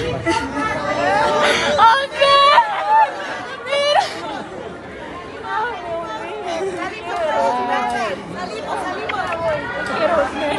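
Several people talking and crying out excitedly over one another, with high-pitched shrieks about two and a half seconds in and again near four seconds.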